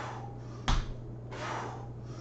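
A man breathing hard during weighted squats with a plastic jug, with one sharp knock about a third of the way in and a loud breathy exhale a little later.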